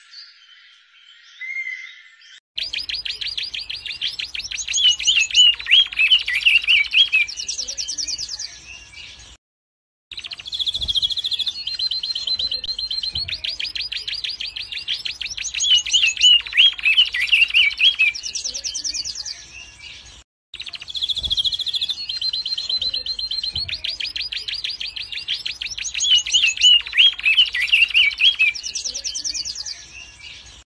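Recorded bird song: the same phrase of a rapid trill and warbled chirps, played three times with short gaps between.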